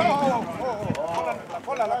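Hooves of a horse walking on a dirt track close by, a few scattered clops, under voices calling continuously.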